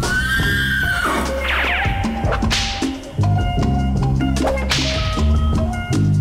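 Music with a deep bass line, and a horse whinnying over it in the first couple of seconds: a rising-then-falling call followed by quick falling cries.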